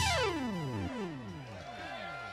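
An electronic effect from the band's gear as a song ends: a cascade of falling pitch sweeps, one after another like delay repeats, each sliding from high to low and fading away.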